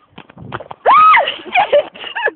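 A person's short, high-pitched squeal about a second in, rising then falling in pitch, with a run of short taps before it.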